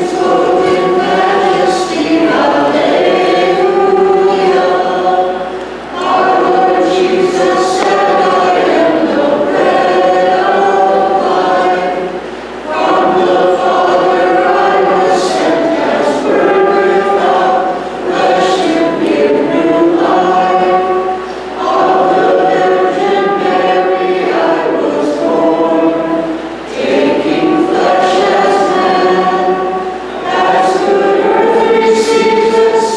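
Church choir singing a liturgical hymn in phrases of about five or six seconds, with brief breaths between them.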